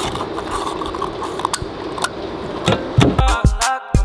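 A car's fuel cap being screwed shut, a few sharp clicks over steady outdoor background noise. About three seconds in, hip hop music with a heavy bass beat starts.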